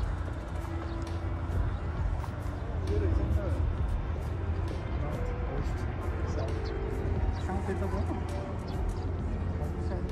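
Wind buffeting the microphone as a steady low rumble, with scattered light clicks of footsteps on paving and faint indistinct voices.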